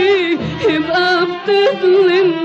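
A woman singing an Arabic song in a classical Egyptian style, her held notes wavering in a strong vibrato, with melodic instruments accompanying her.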